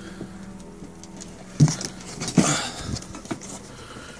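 Handling noise: a few soft knocks and a brief rustle from a handheld phone and the foam armour boot being moved and touched, over a steady low hum.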